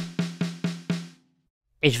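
Sampled Tama Bell Brass snare drum from the BFD3 virtual drum plugin, struck five times in quick succession, about four hits a second, each hit leaving a steady ringing drum tone. Speech comes back near the end.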